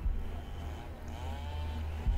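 Low, steady rumbling drone of a background music bed, with a few faint wavering tones coming in about halfway through.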